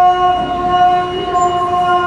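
A voice chanting Islamic prayer, holding one long sustained note that shifts slightly in pitch about a second in.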